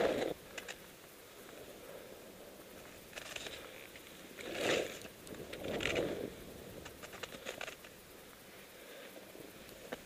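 Quiet hiss and scrape of edges sliding through chopped-up snow, swelling louder with a few turns about three to six seconds in, with scattered light ticks.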